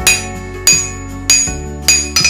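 Blacksmith's hand hammer striking a hot steel billet on an anvil: four ringing blows, about two-thirds of a second apart.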